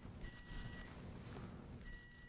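Electrocautery unit buzzing faintly in two short bursts under a second each, a thin steady high tone with hiss, as the tip touches the wound to stop bleeding.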